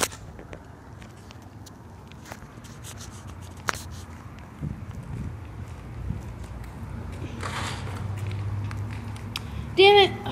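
Handling noise from a hand-held camera being passed over and carried: scattered clicks and knocks with a brief rustle, and a low steady hum that grows louder over the last few seconds.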